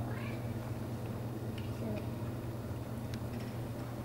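A steady low hum with a short, high, wavering call near the start, and faint hoof steps in soft arena footing.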